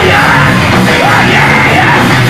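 Heavy metal band playing live and very loud: distorted electric guitar, bass and drums with a shouted vocal over them.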